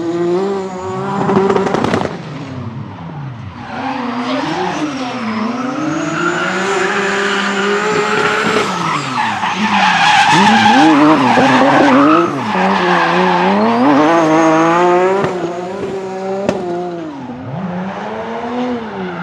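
BMW E36 drift cars' engines revving up and down hard, with tyres skidding and squealing. The engine pitch swings up and down many times and is loudest around the middle.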